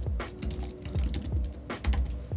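Typing on a computer keyboard: a quick, uneven run of keystrokes as a word is typed into a search field.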